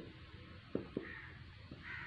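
Felt-tip marker tapping and scraping on a whiteboard while a word is written, with a few short clicks. A crow caws faintly twice in the background, once about a second in and again near the end.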